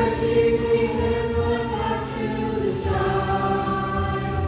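A children's chorus singing a song together over a backing track with a steady beat, holding long notes.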